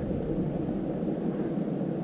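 Steady low background rumble of open air on a lake, with no distinct sound standing out.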